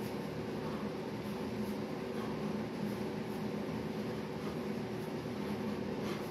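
Steady mechanical hum with a constant low drone, like a fan or air-conditioning unit running, unchanged throughout.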